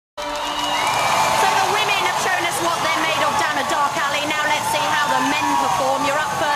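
Studio audience cheering and whooping, many voices at once, with music underneath.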